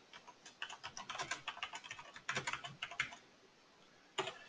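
Typing on a computer keyboard: a quick, irregular run of faint key clicks that stops about three seconds in.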